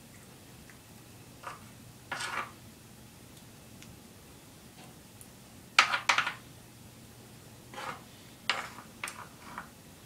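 Scattered knocks and clatters of a metal baking pan being handled and shifted on a tiled counter while sauce is spread over the dough by hand. The loudest double clatter comes about six seconds in, and a run of smaller knocks follows near the end.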